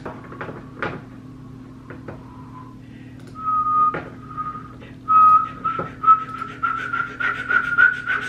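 A person whistling through pursed lips: a few short notes, then a long note that slowly rises in pitch. A few light clicks come in the first half.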